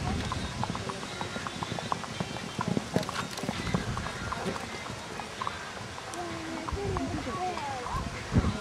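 Hoofbeats of a horse cantering on a sand arena, a run of short dull strokes, with people's voices in the background.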